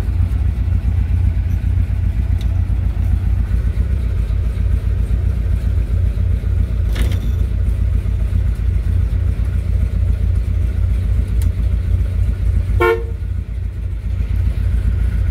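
A 1967 Chevelle SS's V8 engine idling with a steady, deep, loping rumble, heard from inside the cabin. A brief horn toot sounds near the end.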